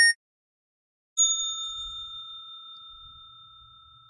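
A brief click, then about a second later a single bell-like ding that rings on and slowly fades: a subscribe-button and notification-bell sound effect.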